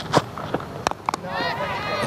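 A sharp crack of a cricket bat edging the ball just under a second in, followed by voices calling out as the ball goes up.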